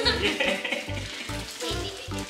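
Plastic packaging crinkling and rustling as it is handled, over background music with a steady beat.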